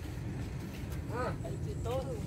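Outdoor ambience with a steady low rumble, with brief snatches of faint voices talking in the background about a second in and near the end.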